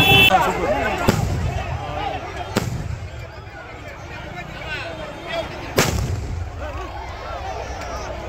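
Aerial fireworks bursting overhead: three sharp bangs, about a second in, again a second and a half later, and the loudest near six seconds in, over the voices of a crowd.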